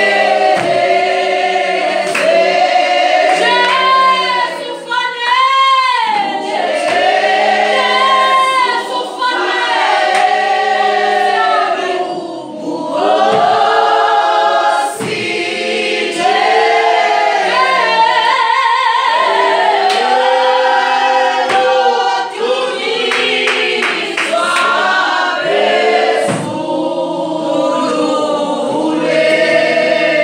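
A group of voices singing a gospel song together, like a choir, with held and gliding notes.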